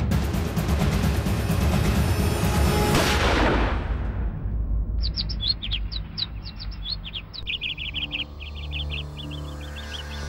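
A loud, dense swell of dramatic background music sweeps downward and dies away over the first four seconds. From about five seconds in, small birds chirp in quick, repeated high calls over a low, steady hum.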